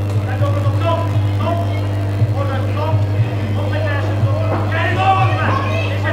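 Several voices calling out and talking in a large hall over a steady low hum.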